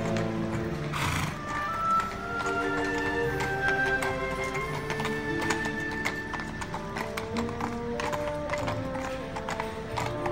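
Shod hooves of two horses clip-clopping at a walk on a paved road, over music that plays throughout. A short rushing noise comes about a second in.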